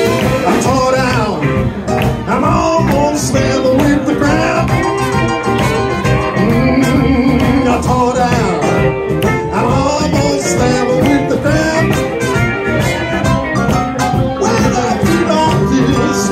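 Live blues band playing the instrumental opening of a Chicago blues tune: electric guitar, harmonica and horns over keyboard, bass and drums, with a steady beat.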